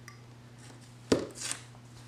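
A sharp tap about a second in, then a short scratchy rustle, as a small craft cutting tool and washi tape are worked at the edge of a paper planner page.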